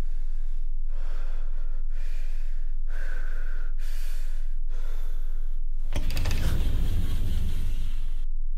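A man's heavy, gasping breaths in and out, about one a second. About six seconds in, a louder, deep noise lasts about two seconds, over a steady low hum.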